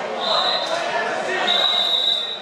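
Babble of many voices echoing in a large sports hall. Two short, high, steady whistle blasts cut through it, one near the start and one in the second half, fitting a wrestling referee's whistle starting a bout.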